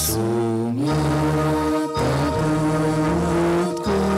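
Slow church music: voices singing long held notes over a keyboard accompaniment, the melody stepping from note to note about once a second.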